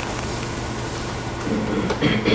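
Steady lecture-room background noise: a hiss with a low steady hum, as from ventilation or the recording system, while nobody speaks. A faint voice begins near the end.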